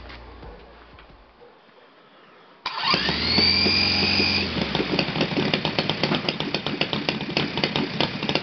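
Saito FG-60R3 three-cylinder four-stroke radial gas engine, running on glow plugs, being started. About two and a half seconds in an electric starter cuts in with a whine that rises and then holds steady. The engine catches almost at once and keeps running with a rapid, uneven firing after the starter whine stops, about four and a half seconds in.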